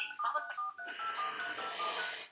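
Phone keypad touch-tone (DTMF) beeps, a quick run of short two-note tones several a second, as a conference ID is keyed in.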